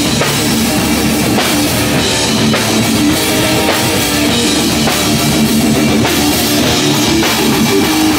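A live hardcore punk band playing loudly: distorted electric guitar, bass guitar and a drum kit going at a driving beat, with no vocals in this passage.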